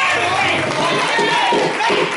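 A woman preaching in a loud, shouting voice through the church microphone, with congregation voices calling out around her.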